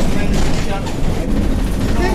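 Bus engine and road noise inside the passenger cabin: a steady low rumble, with faint talk over it.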